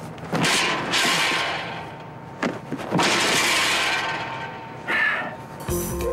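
Crashing impacts of a football player hitting a padded blocking sled. There are two long crashes, about half a second in and about three seconds in, each fading over a second, with sharp knocks between them and a shorter crash near the end.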